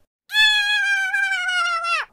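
One long, high-pitched cry in a cartoon voice, held for about a second and a half, sliding slightly down in pitch and cutting off abruptly.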